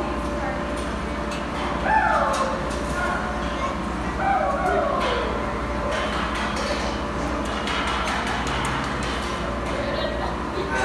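Sheep bleating in a barn: a call that falls in pitch about two seconds in, and another wavering one a couple of seconds later, over a steady low hum.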